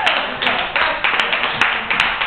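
Audience clapping and applauding at the end of a song, with individual claps standing out sharply.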